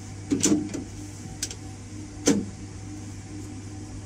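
A management module is slid into an HP ProCurve zl switch chassis and pushed home, giving a few metal clicks and knocks; the sharpest click comes a little over two seconds in. A steady low hum of running equipment sounds underneath.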